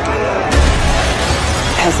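A sudden crash with shattering about half a second in, from a fight scene, over music.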